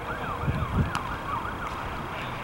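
An emergency-vehicle siren in a fast yelp, its pitch sweeping up and down about three to four times a second, over a low rumble.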